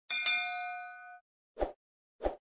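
Bell-ding sound effect of a subscribe animation: a sharp metallic strike ringing in several clear tones that dies away over about a second. A short soft pop follows near the end.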